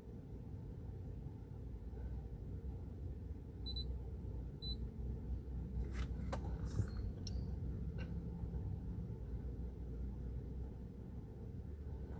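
Hummer H3 engine idling with a steady low rumble. Two short high beeps come about four seconds in, and a few sharp clicks follow between about six and eight seconds.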